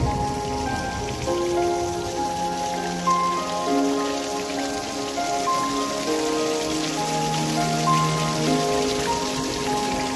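Water from a small waterfall splashing down between boulders into a shallow stream, a steady rushing hiss. Slow background music of long held notes plays over it.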